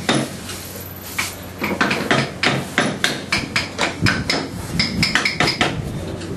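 Small hammer tapping a carving chisel into a wooden figure held in a bench vise: a run of sharp knocks starting about a second in, roughly three strikes a second.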